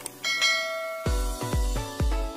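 A click sound effect, then a bright bell chime ringing out as a notification ding. About a second in, an electronic music track with a heavy bass beat starts, about three beats a second.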